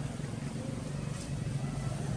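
Low, steady engine rumble of nearby road traffic, getting slightly louder near the end.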